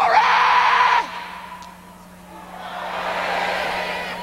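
A preacher's long, held shout of "Glory!" that breaks off about a second in. After a short lull the congregation answers with a swell of shouting and cheering that rises and fades.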